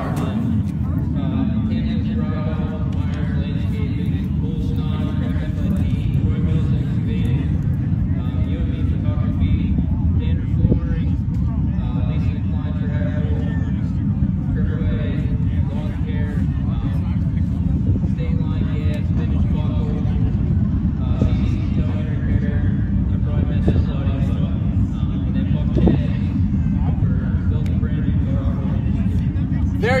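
Race car engines running on the dirt track: a loud, steady low rumble with muffled voices underneath.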